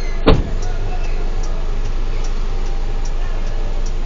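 Fire truck's engine running low and steady, heard inside the cab while it creeps through traffic, with faint regular ticking about twice a second. A single sharp thump comes about a third of a second in.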